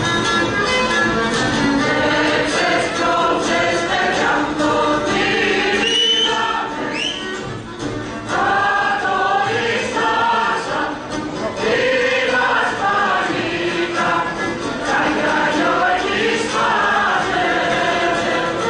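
Greek folk dance song sung by a group of voices over music, in phrases with short breaks between lines.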